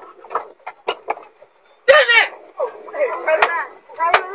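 Frightened people shouting inside a bus, with a loud cry about two seconds in. Several sharp knocks are heard in the first second or so.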